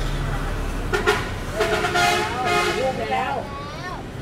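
Voices of people close by, loud and raised, with one voice's pitch sliding up and down in the second half.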